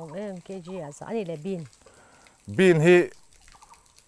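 Speech only: a person talking in two short phrases with a brief pause between them.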